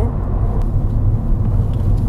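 Steady low road and engine rumble heard inside the cabin of a Mercedes-Benz SLK (R172) hardtop roadster as it is driven.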